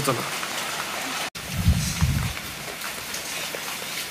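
Steady rain falling and pattering on wet ground and roofs. There is a brief sudden break a little over a second in, followed by a short low rumble.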